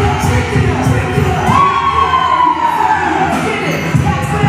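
Hip-hop track with a steady beat under a group cheering and shouting, and one long high wail about a second and a half in that rises and then slowly falls.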